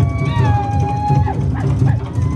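Polynesian dance drumming: a fast, steady drum beat of about four strokes a second. Over it come shrill high calls that hold a pitch and then slide up and down.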